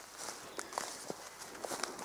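Faint footsteps and rustling of leafy plants as someone walks through forest undergrowth, a few soft irregular crunches.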